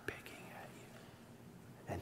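A pause in a man's speech. Faint room tone, with a soft click just at the start, and his voice coming back in at the very end.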